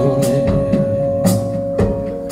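A recorded rock/blues track with drum kit and bass playing loud through Legacy Audio Valor tower loudspeakers in a demo room.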